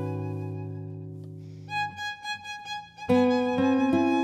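Violin and classical guitar duo playing a slow tango: held notes ring and fade away, a few quiet, sparse higher notes follow, and both instruments come back in fully about three seconds in.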